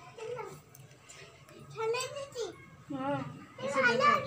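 High-pitched voices talking, a child's among them, getting louder in the second half, over a low steady hum.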